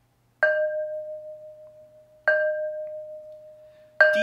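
A glazed ceramic flowerpot struck twice with a yarn mallet, about two seconds apart; each strike gives a clear bell-like note that slowly dies away. These are the two 'ready, set' cue notes played before everyone joins in on the third.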